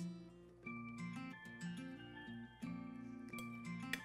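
Background music led by a plucked guitar, with notes that step up and down in an even rhythm.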